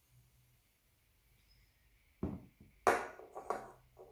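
A soft thump, then two sharper knocks about half a second apart, the first the loudest, as an aluminium drink can and a glass are set down on a wooden table, starting a little after two seconds in.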